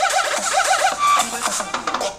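Electronic music with a drum beat and a quick repeating synth figure, played at full volume through the Razer Phone 2's front-facing stereo speakers.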